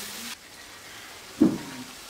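Spice paste frying in a karahi: a sizzle that cuts off abruptly a moment in. A faint, low background follows, with one brief thump about a second and a half in.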